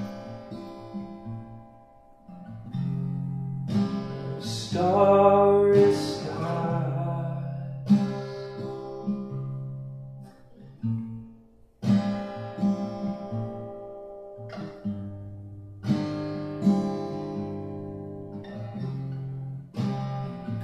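Acoustic guitar strummed: chords struck every two to four seconds and left to ring out between strums.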